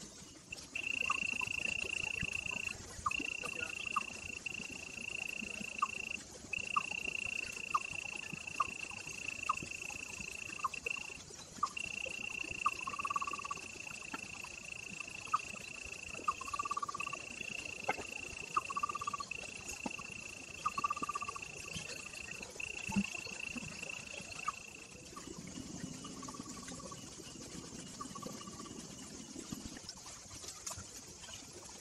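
An insect trills steadily on one high pitch, with brief gaps, and stops about 25 s in. Short lower chirps and clicks repeat through it.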